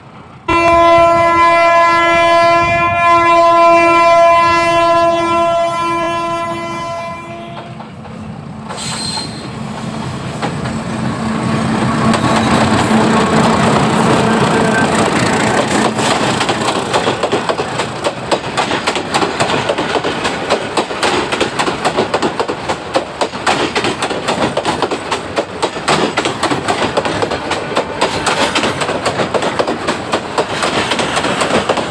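A Bangladesh Railway diesel locomotive's horn sounds one long, loud blast, dipping briefly a couple of times, as the train approaches. The horn stops after about seven seconds. The train then runs past close by: its coaches' wheels clatter rhythmically over the rail joints over a steady rumble.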